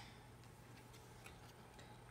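Near silence: room tone with a few faint ticks of handling.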